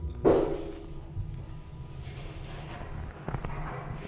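Kone EcoSpace traction elevator car: a short knock about a quarter second in, then the steady low hum of the car, with a few faint clicks near the end.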